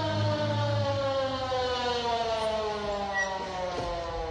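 A siren-like wail on a record: one tone rich in overtones, sliding slowly and steadily down in pitch, with a low hum under it at first and a faint knock near the end.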